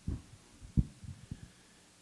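Handheld microphone handling noise: several dull, low thumps as the microphone is passed from one person's hand to another's.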